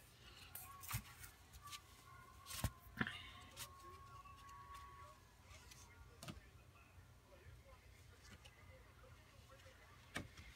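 Near silence with a few faint clicks and taps scattered through it, from paper greeting cards being picked up and handled.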